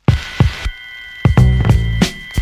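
Background music with a steady drum beat that starts suddenly, with a deep held bass note coming in about halfway.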